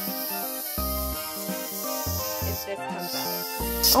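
Aerosol can of whipped cream spraying, a steady hiss that swells briefly near the end, over background music of held notes.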